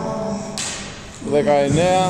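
A man's voice counting reps aloud in Greek, with a quieter gap between counts.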